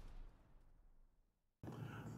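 Near silence. The tail of a cartoon explosion sound effect fades out as a low rumble in the first moment, then there is dead silence, and faint room hum comes in near the end.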